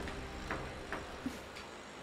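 A few soft, irregularly spaced ticks over a faint steady low background.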